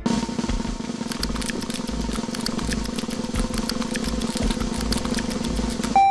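Suspense snare drum roll over a steady low drone, ending on a single loud hit.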